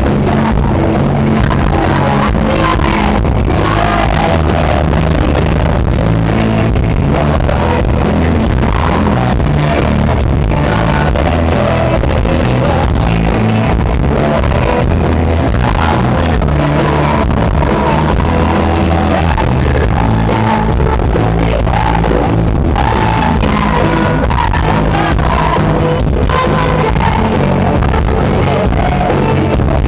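A live pop-rock band playing loudly, with drums, electric guitar and a singer, recorded from within the audience in a large hall.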